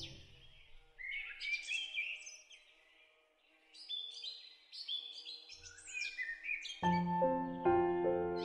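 Small birds chirping and singing in short, high, quick phrases, with a near-silent pause in the middle. A new piece of soft music with piano-like notes comes in near the end.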